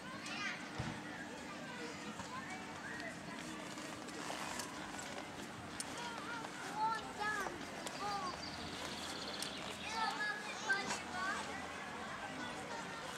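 A crowd of children shouting and calling out during a contest, with short shouts rising and falling in pitch, louder about seven seconds in and again near the end.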